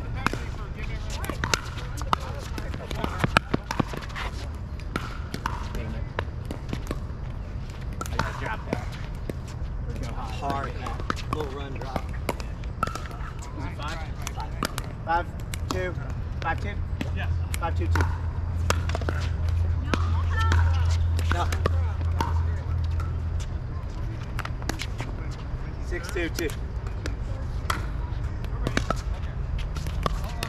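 Pickleball rallies: sharp pops as paddles strike the hollow plastic ball, with quieter bounces on the hard court, coming in quick irregular series.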